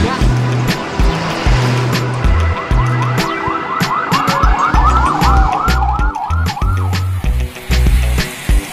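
A car siren in a fast up-and-down yelp, about four cycles a second, heard from about three seconds in until about seven seconds in, over background music with a steady beat.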